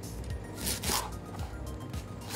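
A serrated kitchen knife sawing through an onion on a plastic cutting board: a couple of short, crisp cutting strokes just under a second in. Background music with a steady bass plays under it.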